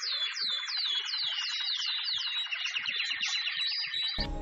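Birdsong sound effect: a run of short whistled chirps, each sliding downward in pitch, about three a second, over a fast trill.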